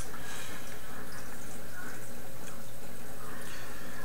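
Steady trickle of water from an aquarium filter under a low, even hum, with a brief click at the start.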